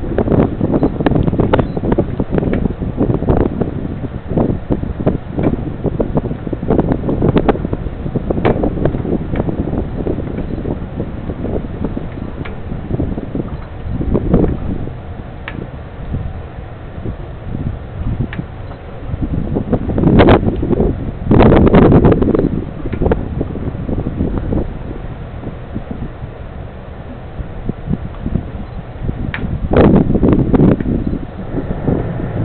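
Wind buffeting the microphone in uneven gusts, with many short thumps, loudest about twenty seconds in.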